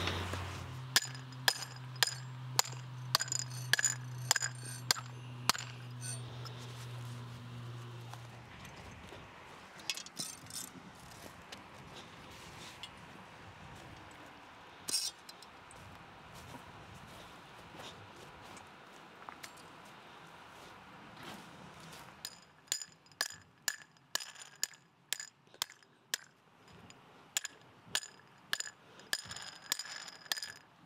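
A hammer striking the cap on a half-inch fiberglass fence post over and over, driving it into the ground, each strike a sharp clink with a metallic ring, about two a second. There are two bouts of strikes with a lull between them, and a low steady hum under the first bout.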